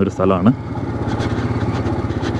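Motorcycle engine running steadily with an even, pulsing beat, heard from the rider's seat.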